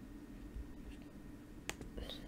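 A computer mouse button clicking once sharply, with a fainter second click just after, near the end, over a faint steady low hum.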